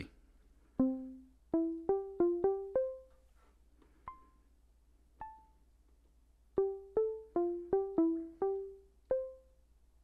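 Moog Mother-32 analog synthesizer sounding short, quickly decaying plucked notes one at a time at different pitches, as a sequence in the key of C is keyed in step by step. The notes come unevenly, in two runs of quick presses with a few sparse notes between them.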